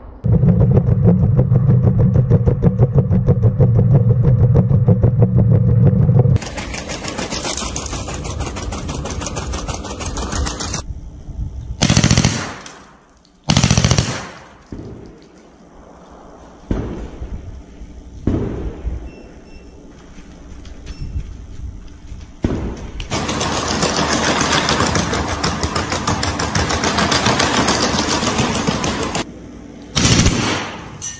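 Machine gun mounted on a robot dog firing long bursts of rapid automatic fire. Over the first ten seconds the shots run together; scattered single shots follow, and another long burst comes near the end.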